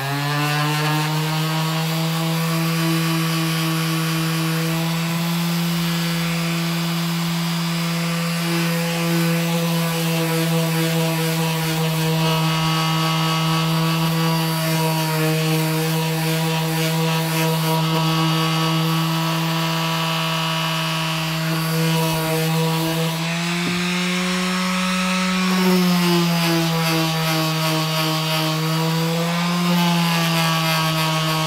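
Electric orbital sheet sander running steadily, its pad scrubbing over a wooden cheese board with cured epoxy resin to smooth away resin leftovers and imperfections. The motor's pitch wavers for a few seconds near the end.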